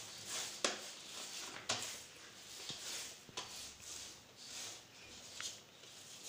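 Hands kneading and patting a nearly finished ball of atta dough in a steel plate: soft, irregular pats and scuffs, with a few short sharper clicks.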